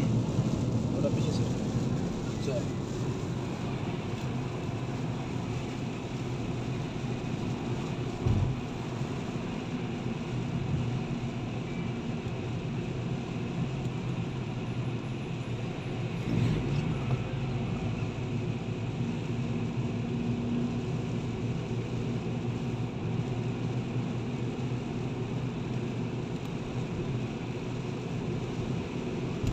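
Steady road noise inside a car driving on a rain-soaked road: engine and tyres running through standing water, with a brief low thump about eight seconds in.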